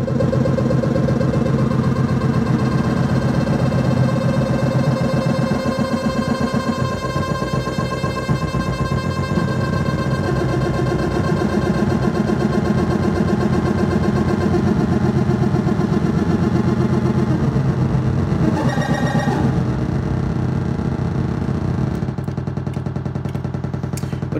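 Eurorack modular synthesizer playing a continuous buzzy drone, with the Baby-8 step sequencer clocked very fast to shape the oscillator's wave. The tone flickers rapidly throughout, with a brief brighter burst about nineteen seconds in.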